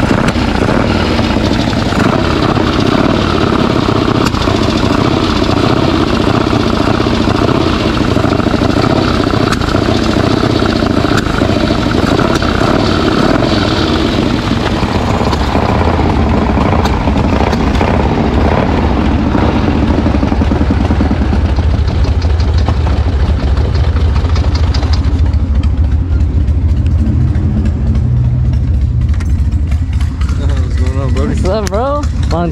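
Motorcycle engine running. About 25 seconds in it falls back to a low, steady idle rumble.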